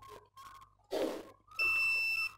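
Digital multimeter's continuity buzzer giving a steady high-pitched beep, starting about one and a half seconds in, as the test probes are touched together: the beep signals a closed circuit and shows the continuity function is working.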